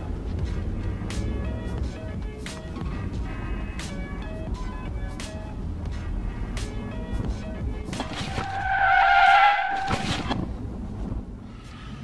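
Background music with a steady beat. About eight seconds in, a loud tyre squeal lasting about two seconds: a vehicle braking hard in an emergency stop.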